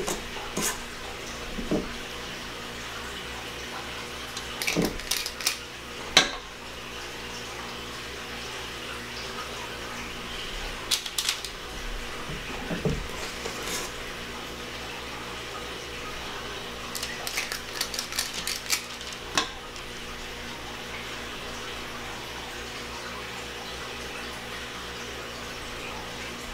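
A utensil clinking and scraping against a stainless steel mixing bowl: scattered light clinks and taps, the loudest about six seconds in, over a steady low background hum.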